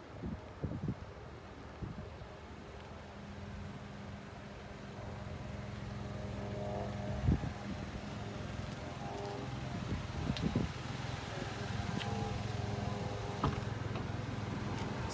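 A Mitsubishi Mirage's small three-cylinder engine idling, a steady hum that grows louder over the last seconds, with a few brief thumps.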